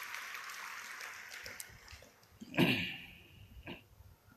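Audience clapping dying away over the first couple of seconds, then a brief louder sound a little past halfway.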